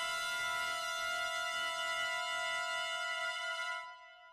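Sampled brass 'moving' pad from Sonokinetic's Espressivo library played back: one steady, high held sound that fades out near the end.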